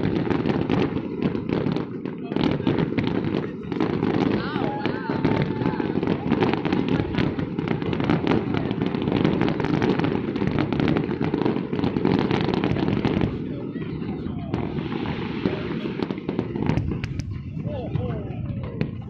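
New Year fireworks bursting and crackling from city skyscrapers in a dense run of sharp bangs and crackles, thinning out a little after about thirteen seconds. Under them is a rooftop crowd's cheering and shouting.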